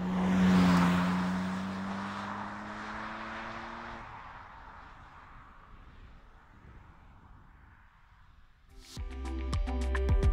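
BMW Z4 coupe's straight-six engine accelerating away just after passing, its note rising slightly in pitch and fading into the distance over several seconds. Background music with a beat comes in near the end.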